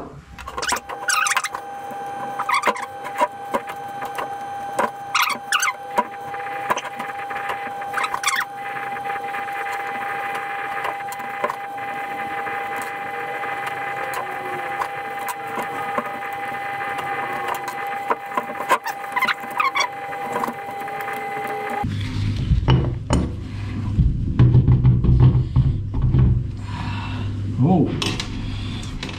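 Small metal clicks and taps from a hex key and bolts being worked at the back of a steel three-jaw lathe chuck, over a steady held tone. About three-quarters of the way through, the tone stops and heavier, low clunks and handling noise follow as the chuck's back plate is lifted off.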